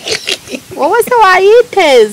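A woman crying out loud: a few sharp breathy sobs, then from about a second in a loud, high-pitched wail that swoops up and down in pitch and breaks into several cries.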